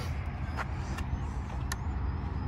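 Wind buffeting the microphone: a steady low rumble, with a few short sharp clicks.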